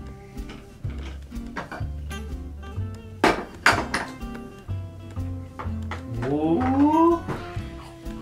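Lo-fi holiday background music with a steady bass line. Over it come a few sharp clacks of plastic toy food pieces being handled, the loudest two a little past three seconds in.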